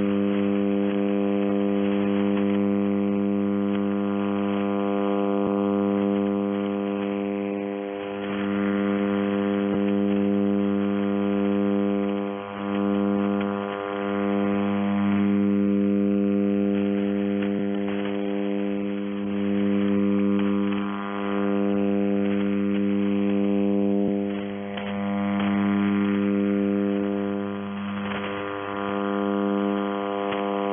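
Shortwave radio receiver tuned to 5400 kHz with no station transmitting: a steady buzzing hum of interference made of many evenly spaced tones over faint hiss. It dips briefly a few times.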